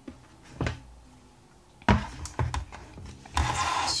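Picture frames being handled on a tabletop: a light click, then a sharp knock about two seconds in with a few lighter clicks after it, and a brief scraping rush near the end as something slides.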